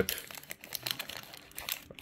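Foil booster-pack wrapper crinkling as it is handled, a scatter of soft, irregular crackles.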